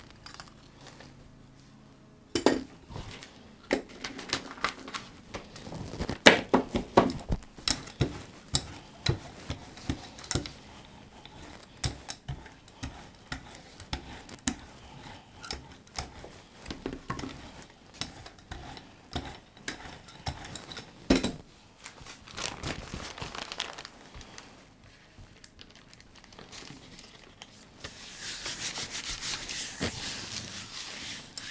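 Rubber brayer rolled back and forth through tacky acrylic paint on a gel plate, giving a dense run of irregular sharp clicks. Near the end a sheet of paper laid over the plate is rubbed down by hand, a steady papery rustle.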